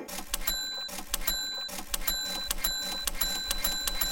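A series of high, bell-like electronic dings with sharp clicks, about two or three a second, forming an edited-in sound track under on-screen text.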